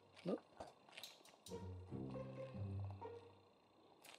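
Faint background music of held notes that change every half second or so. A few light clicks of plastic building bricks being pressed together come about a second in.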